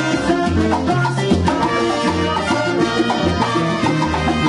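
Live salsa band playing a steady groove: a bass line stepping between low notes under shaken maracas, conga drums, timbales and keyboard.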